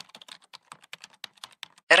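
A quick, irregular run of faint clicks, about eight to ten a second.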